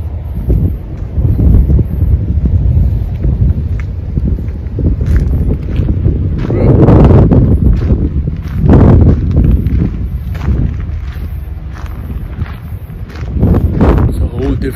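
Wind buffeting a phone's microphone: a loud, low, steady rush, with stronger gusts about seven and nine seconds in.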